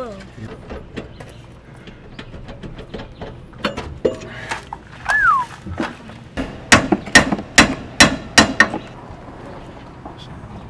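Metal work on a vehicle's rear drum brake and axle: light tool clicks and clanks, then a quick run of about eight sharp metallic knocks near the end. A short falling whistle-like tone sounds about halfway through.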